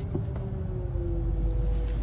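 Steady low rumble inside a car's cabin, with a faint held tone that drifts slowly down in pitch.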